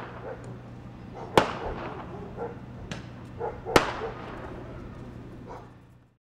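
Firecrackers going off in the dark, three sharp bangs each trailing off in an echo, the loudest about a second and a half in and just before four seconds in. A dog barks between the bangs.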